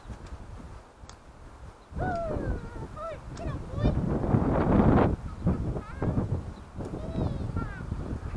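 Wind gusting on the microphone, loudest about four to five seconds in, with a distant person's voice now and then.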